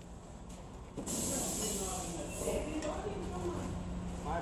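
A sudden loud hiss starts about a second in and eases off after a second or so, over a steady low hum and indistinct voices.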